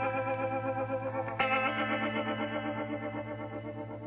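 Background music: sustained, slightly wavering chords, with a chord change about a second and a half in.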